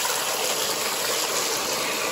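Water gushing steadily out of the garden-hose outlet of a Wayne WaterBUG submersible utility pump and splashing onto a concrete slop-sink basin. The pump has switched itself on and is pumping the water out.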